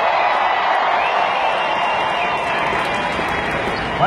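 Large arena crowd cheering and clapping, a steady roar of many voices.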